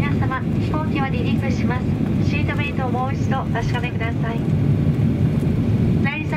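A flight attendant's takeoff announcement over the cabin PA, heard over the steady low rumble of a Boeing 737-800's engines and cabin as the airliner taxis.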